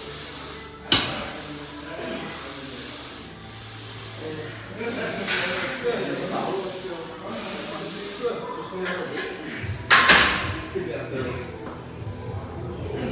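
Indistinct talking in a large, echoing room, broken by two sharp knocks: one about a second in and a louder one near the end.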